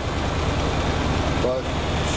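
Vehicle engine idling, a steady low rumble heard from inside the cab.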